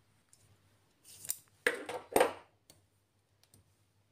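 Metal Allen keys clicking and scraping in their plastic holder as one is pulled out: three short scraping clatters about a second in, then a few light metallic ticks.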